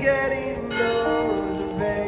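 A street busker's music played through a small amplifier: long held notes that slide up and down between pitches.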